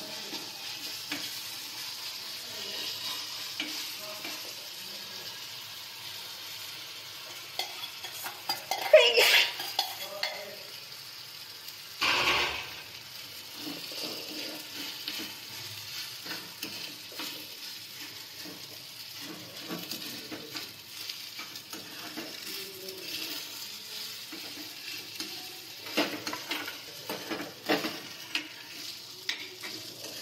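Masala sizzling in a metal kadhai while a metal spoon stirs it. There are two louder bursts about nine and twelve seconds in, around when rice is added. After that the spoon scrapes and clicks against the pan many times as the rice is mixed in.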